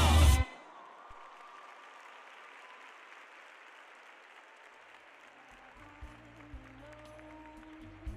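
The routine's music ends abruptly about half a second in, followed by faint, steady applause from the arena crowd.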